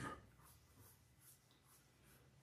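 Near silence: room tone, with one brief faint rustle right at the start.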